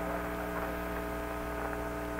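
Steady electrical hum with a faint hiss and a few faint clicks of static on the Apollo radio voice link, with no one transmitting.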